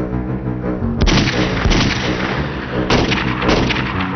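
Sustained gunfire, rapid rifle shots starting suddenly about a second in and running on in several volleys, over dramatic background music with held tones.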